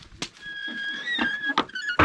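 Knocks from a wooden corral gate as cattle are worked through it, with a steady high whistle-like squeal lasting about a second from a little after the start.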